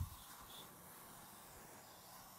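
Aerosol can of sealant remover spraying onto old sealant on a metal part: a faint, steady hiss.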